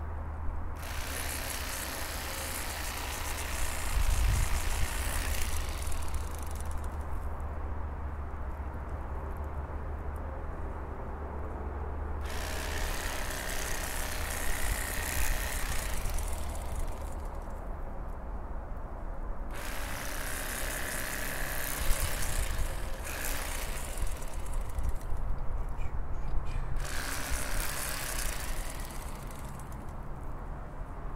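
Bubba Blade electric fillet knife running in about five bursts of a few seconds each, its reciprocating blades buzzing as they saw through a crappie. A steady low hum runs underneath.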